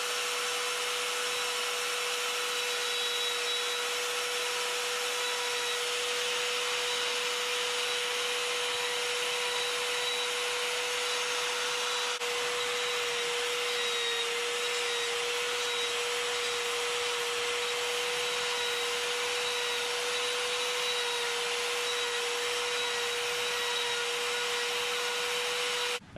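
Handheld rotary carving tool fitted with a coarse green Saburrtooth flame burr, running at high speed and grinding into poplar wood. It is a steady whine at one unchanging pitch over a constant hiss.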